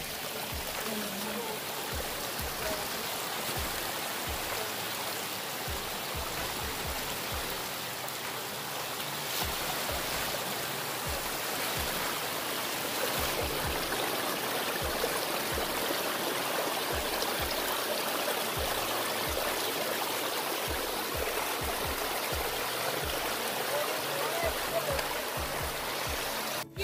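Small creek cascade: water spilling over mossy rocks and splashing into a shallow pool with a steady rushing splash, growing a little louder about a third of the way in.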